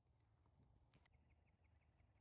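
Near silence: a faint low outdoor rumble with a few faint clicks, then from about halfway a quick run of faint high ticks.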